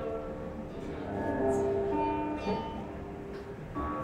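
Solo guqin, in F, played with single plucked notes that each ring on and fade, several in turn.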